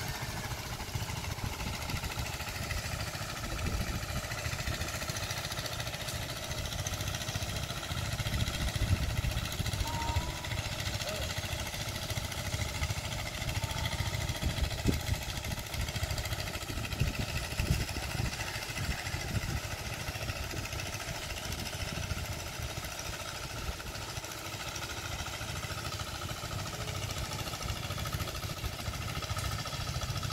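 Small engine of a two-wheel hand tractor working a flooded rice paddy, running steadily at a distance. A low, gusty rumble of wind on the microphone lies under it.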